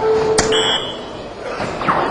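Electronic soft-tip dartboard: a dart strikes the board with a sharp click, and the machine sounds its electronic hit tones, a steady low beep with a higher tone over it, as it scores the throw. Another impact sounds near the end.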